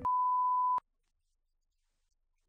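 Broadcast color-bar test tone: one steady, pure beep lasting under a second, cut off abruptly.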